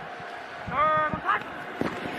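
Football stadium crowd noise with a short, high shouted call about a second in, as the quarterback calls for the snap, and a second brief shout just after it.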